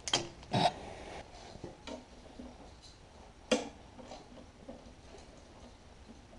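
Clicks and knocks from hands working wiring connectors in a tractor's engine bay: two sharp clicks in the first second, a third about three and a half seconds in, and small ticks and rattles between.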